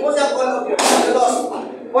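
Voices of children and adults calling out over one another, with one sharp slap about a second in.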